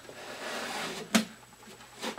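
Wooden sliding lid of a lap desk slid along its track with a soft rubbing sound, then knocking to a stop once about a second in.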